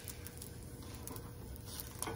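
Egg quietly sizzling in a cast iron skillet over medium to medium-low heat, with a light scrape of a silicone spatula against the egg and pan near the end.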